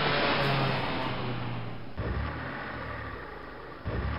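Car engine sound effect: a car driving along with its engine running. It starts abruptly, drops in pitch about two seconds in, and grows steadily fainter.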